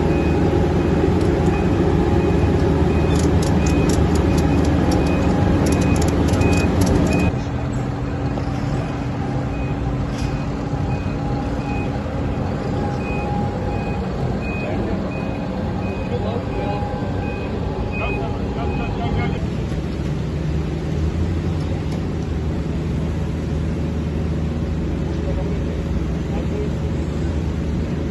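Heavy vehicle engines running steadily, with a high electronic warning beep repeating about every half second that stops about 19 seconds in. A quick run of sharp clicks comes about 3 to 7 seconds in, and the sound drops in level at a cut soon after.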